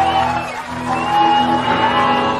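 A live rock band plays electric guitars in long, held, ringing notes.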